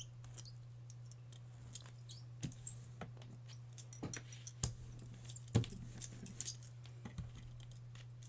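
Scattered light clicks and taps of art tools being handled on a work table, over a steady low electrical hum.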